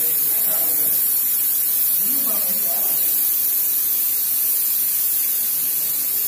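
Small paint spray gun hissing steadily as it sprays a fine mist of paint, a continuous high-pitched hiss at an even level.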